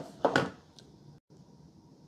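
Short plastic click and rattle of a power adapter plug pushed into a power strip, then quiet room tone with a brief dropout.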